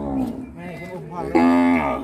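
A cow mooing twice: the end of one long moo sliding down in pitch, then a louder, steady moo held for over half a second near the end.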